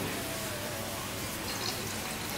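Red wine being poured from a glass decanter into a wine glass, a steady liquid pour.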